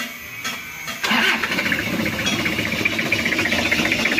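Toyota Kijang diesel engine cranked and catching about a second in, then running at a low idle with a steady diesel clatter. It idles too low and shakes badly, which the mechanic puts down to a slack timing belt or a dirty diesel fuel filter starving it of fuel, as if air were getting into the fuel line.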